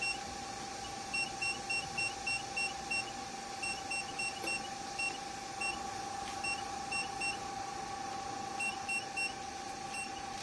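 Touchscreen key beeps from a 980 nm diode laser machine: about two dozen short, identical high beeps in quick runs of several, one per tap as the settings are stepped up and down. A steady high hum runs underneath.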